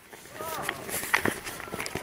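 Footsteps crunching on a dry, leaf-covered dirt trail, with people's voices between the steps.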